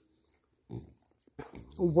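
A dog making short nasal sounds close to the microphone: one brief burst just under a second in, then a rougher run of them about half a second later.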